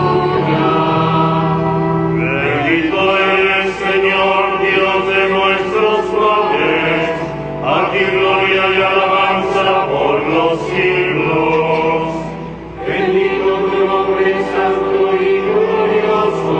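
Liturgical choir singing a chant-like hymn. Sustained phrases are broken by short breaths about every five seconds.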